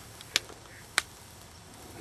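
Two short, sharp clicks about two-thirds of a second apart, over a faint steady background.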